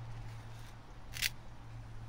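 A thin metal chain falls back onto a wooden tabletop with one short, sharp rattle about a second in, over a steady low hum.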